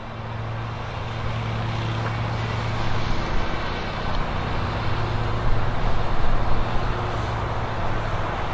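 A steady low hum under a continuous wash of road-traffic noise, growing a little louder after about three seconds.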